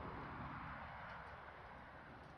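Faint, steady outdoor background noise: an even hiss with a low rumble, easing slightly towards the end.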